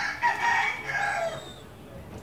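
A rooster crowing once: a loud call of about a second and a half that falls in pitch at its end.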